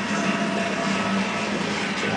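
Steady low hum with an even rushing hiss, the running noise of a reef aquarium's pumps and water flow.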